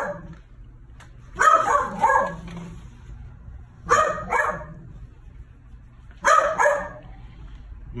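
Small crated dogs barking in three short bursts of about two barks each, with pauses between.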